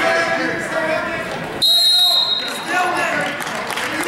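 Shouting from spectators and coaches in a gym, cut across about one and a half seconds in by a single high-pitched blast lasting under a second, a referee's whistle stopping the wrestling.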